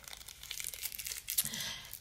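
Faint rustling and crinkling handling noise close to the microphone, a scatter of small crackles.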